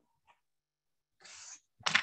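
A person's breathing: a faint breath about a second in, then a short, sharp, breathy burst near the end, after a stretch of silence.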